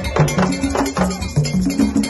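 Hand drums played together in a lively, steady rhythm. A bright strike on a metal bell rings out several times a second over repeating low drum notes.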